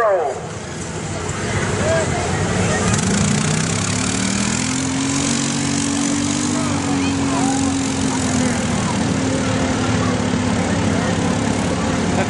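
ATV engine revving hard under throttle through a mud pit. Its note climbs steadily in pitch for about four seconds, then holds high with a slight dip before carrying on steadily.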